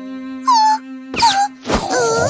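Cartoon character's short wordless moans, with gliding pitch, over a steady held musical note.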